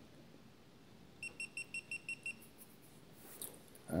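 GoPro Hero Session camera beeping seven times in quick succession, short high beeps about a second in, as it powers off after a single press of its button.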